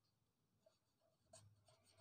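Near silence with faint scratching of a pen writing on paper.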